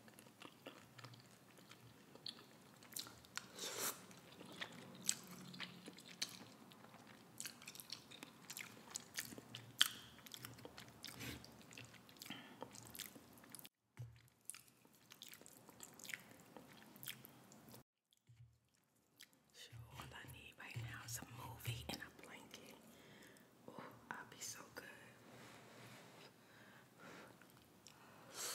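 Close-miked chewing of instant cup noodles, with soft wet mouth clicks and smacks, broken by two brief silences partway through.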